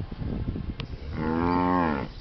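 A cow mooing once: a single drawn-out call that starts about halfway in, its pitch slowly falling.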